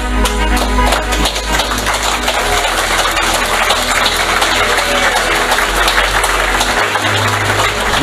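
Instrumental background music with sustained low bass notes and a dense, steady upper texture.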